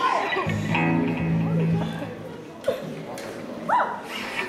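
Amplified electric guitar sounding a low note held for about a second and a half, with voices in the hall around it and two short rising-and-falling calls near the end.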